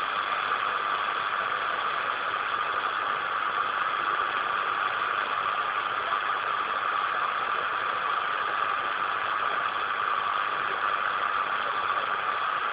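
Steady hiss of band noise from a Lincoln radio transceiver's speaker, receiving 27.660 MHz upper sideband with no station transmitting.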